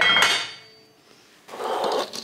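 Metal cutlery clinking once on dishware, then chopped vegetables being scraped off a plastic cutting board with a fork into a bowl, a rough scraping rustle near the end.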